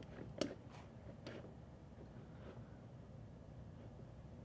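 A few faint light clicks from handling a foam-cup calorimeter and the thermometer through its lid, all within the first second and a half, then quiet room tone.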